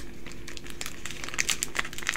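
Yu-Gi-Oh trading cards being handled and laid down on a playmat: a run of small clicks and rustles, busiest about halfway through.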